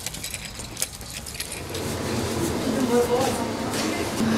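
A few light clinks in the first second or so, then voices rising in a small room as people greet each other, with a high, excited voice toward the end.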